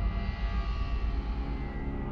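A low, steady rumbling drone with faint held tones above it: a suspense soundtrack bed under eerie footage.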